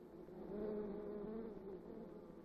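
Honey bees buzzing together in the hive: a steady, wavering hum that swells a little about half a second in.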